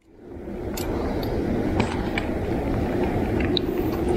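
Steady low outdoor rumble that fades in over the first second, with a few faint clicks and knocks.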